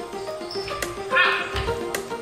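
Background music with a steady sharp beat about once a second over held tones. A short, high-pitched cry stands out above the music a little after a second in.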